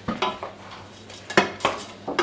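Wooden spoon knocking against the side of a stainless steel cooking pot while stirring shrimp in a beer sauce: several short knocks, the loudest two about a second and a half in.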